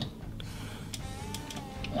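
Faint clicks and handling of hard plastic action-figure parts as a weapon is fitted onto the toy's arm. A faint thin whistle comes in about a second in.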